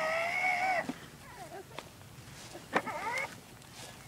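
A young child's high-pitched vocal sounds: a drawn-out whine that ends just under a second in, then a shorter one with a falling pitch near three seconds.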